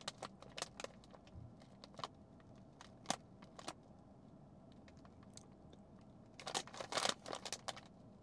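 Faint handling of a sealed plastic snack bag: scattered light clicks, then a short burst of crinkling about six and a half seconds in.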